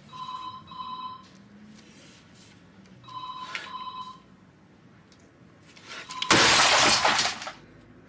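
A telephone ringing with the British double-ring cadence, two rings about three seconds apart. About six seconds in, a loud harsh noise lasts just over a second.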